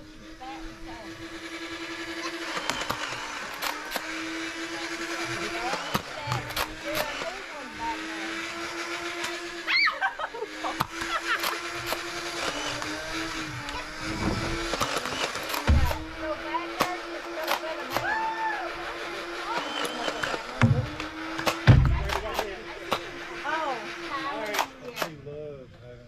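A voice holding long, level notes of several seconds each, sliding up into each note and down out of it, with sharp clicks and a few low thumps between.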